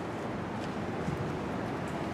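Steady background noise, with a few faint clicks as the camera is carried around the truck.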